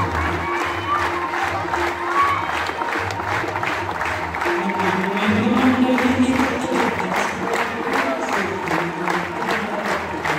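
Aarti devotional music: voices singing over a steady beat of about two strokes a second, with crowd noise.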